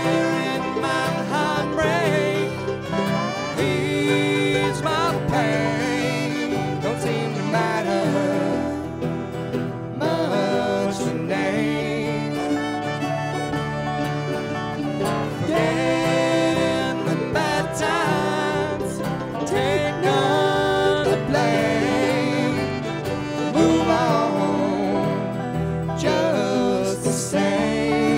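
Bluegrass string band playing an instrumental break: banjo, acoustic guitar, mandolin, upright bass, fiddle and dobro, with sliding, bending lead notes over a steady rhythm.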